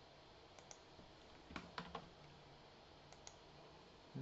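Faint clicks of a computer keyboard and mouse, a handful of short, scattered clicks over near silence.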